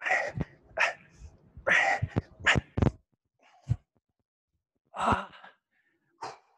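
A man breathing hard after jump-squat exercise, a quick run of heavy, noisy exhalations in the first three seconds and another about five seconds in, with low thuds of feet landing on the gym floor among them.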